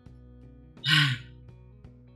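Faint background music with one short breathy vocal sound, like a gasp, about a second in.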